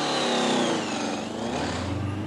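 Motorcycle engine revving as it rides off, its pitch dropping over the first second and then climbing again.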